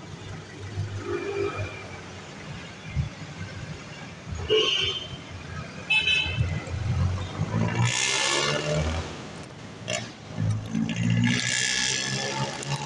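Street traffic: motor vehicle engines running close by, with short car-horn toots in the middle and louder surges of engine noise about two thirds of the way in and near the end.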